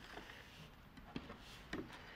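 Quiet handling of fabric on a wooden table, with a couple of light ticks in the second half as pins are picked from a metal pin dish.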